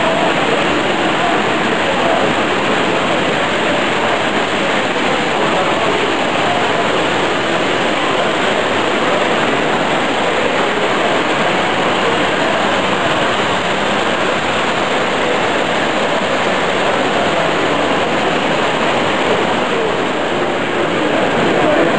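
Steady, even rattling rumble of Hornby O gauge tinplate model trains running on tinplate track, blended with the general hubbub of a busy exhibition hall.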